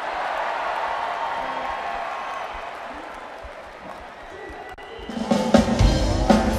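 Arena crowd cheering after the song announcement, fading over several seconds. About five seconds in, the band starts playing, with guitar and bass.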